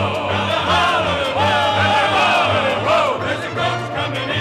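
Show-tune singing with a theatre orchestra: voices holding and gliding between notes over a steady pulsing bass.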